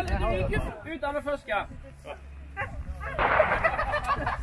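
Voices of a group talking and calling out, with a steady low rumble of wind on the microphone. About three seconds in, a louder burst of mixed voices.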